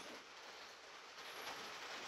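Quiet room tone: a faint, steady hiss with no distinct handling sounds.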